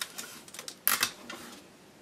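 A few sharp plastic clicks and clacks from handling an adhesive tape dispenser, with the loudest pair of clicks about a second in.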